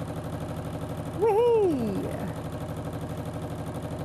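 Electric sewing machine stitching steadily at speed: a fast, even run of needle strokes as a seam is sewn through layered fabric. A short rising-and-falling voice sound comes over it about a second in.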